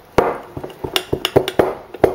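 Spoon knocking and clinking against the inside of a glass mason jar as it is worked down through dried juniper berries in oil: about five sharp, unevenly spaced knocks.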